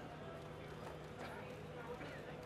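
Faint background chatter at a red-carpet photo call, with scattered clicks of photographers' camera shutters and a low steady hum underneath.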